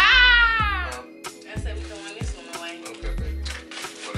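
A woman's high-pitched squeal that falls in pitch over about a second, over background music with a steady bass beat.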